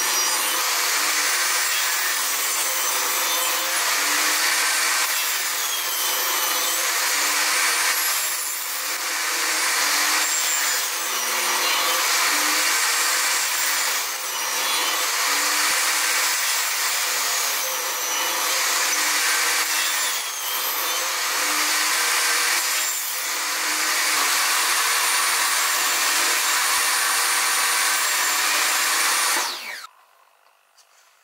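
Table saw running and ripping slot cuts into the end grain of a board held upright in a tenoning jig, pass after pass. The blade's note dips and recovers with each pass, about every two to three seconds. The sound cuts off suddenly just before the end.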